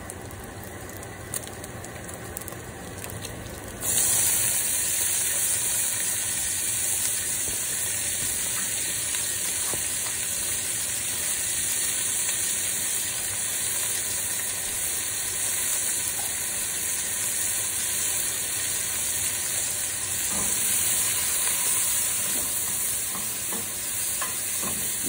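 Diced onions, bell pepper and garlic sizzling in hot bacon fat in a stainless steel pot on high heat. The sizzle jumps up suddenly about four seconds in, as the vegetables hit the fat, and then holds steady.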